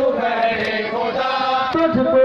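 Male voices chanting a noha, the Urdu lament of Muharram mourners, in a slow melody with long held notes.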